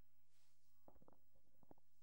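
Near silence: a faint steady low hum, with a few faint ticks about a second in.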